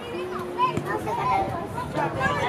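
Overlapping voices of children and adults calling out across a soccer pitch, with one drawn-out call lasting about half a second near the start.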